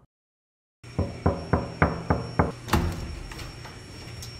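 Knocking on a door: a quick run of about seven evenly spaced raps, roughly three or four a second, starting about a second in.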